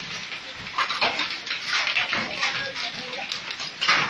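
Heavy hail and rain pelting down, a dense wash of noise broken by many irregular hard hits.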